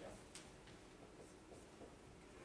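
Faint strokes of a dry-erase marker writing on a whiteboard.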